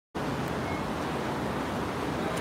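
Steady rushing splash of a plaza fountain's water jets, with a car driving slowly by underneath it.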